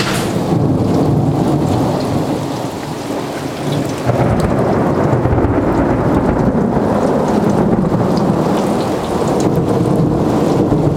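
Thunder rumbling with steady rain falling. The rumble eases off a little, then swells again about four seconds in.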